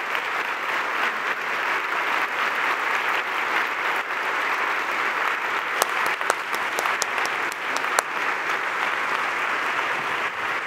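Audience applauding steadily throughout, with a few sharper clicks standing out partway through.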